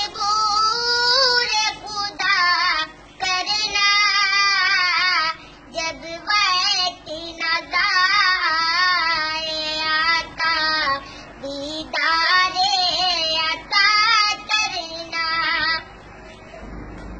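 A young boy singing a naat, a devotional poem in praise of the Prophet Muhammad, solo and unaccompanied. He sings in phrases with a strongly wavering, ornamented pitch, broken by short pauses for breath, and stops near the end.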